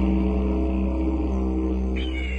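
Meditative drone music: a steady, sustained low didgeridoo drone rich in overtones, with no breaks.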